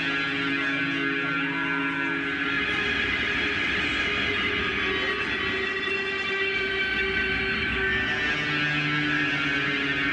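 Distorted electric bass guitar played solo, holding long droning notes. The pitch shifts about two and a half seconds in and again near the end.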